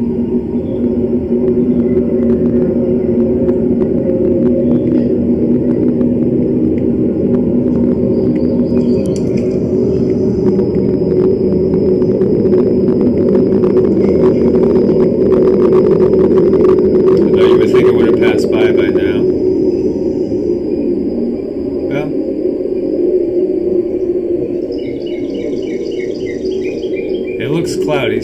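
A loud, steady low rumble with several humming tones, the mysterious sky sound, which sounds like a plane or a train going by. A thin high steady tone runs along with it through the middle.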